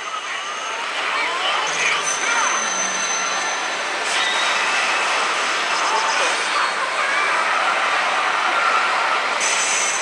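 Steady, loud din of a pachinko hall, with a pachislot machine's electronic effect sounds playing over it.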